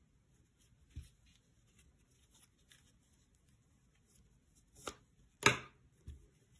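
Quiet handling of cotton t-shirt yarn and a crochet hook as a yarn tail is worked through a stitch, with a soft knock about a second in. Two sharp clacks come near the end, the second and loudest being the crochet hook put down on the tabletop.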